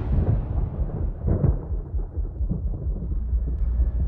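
A deep, thunder-like rumble from trailer sound design. It dies away in its upper range over the first two seconds, while low, uneven pulsing continues beneath.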